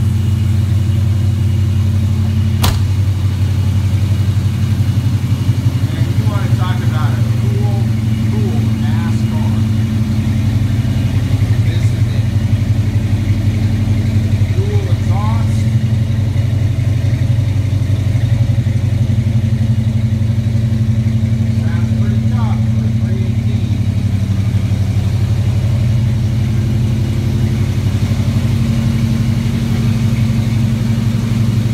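The 1973 Plymouth Scamp's engine running at a steady idle, with one sharp click about three seconds in.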